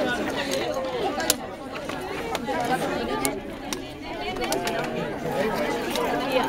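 Several people talking at once in a crowd, with a few sharp clicks scattered through.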